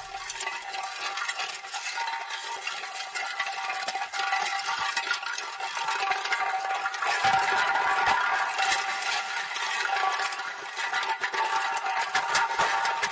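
Glass bottle rolling and rattling across a concrete floor, a continuous clinking rattle with a steady ringing tone, louder around the middle.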